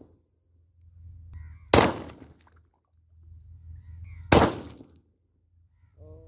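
Two pistol shots about two and a half seconds apart, fired at bottle targets. A steady low rumble runs between them.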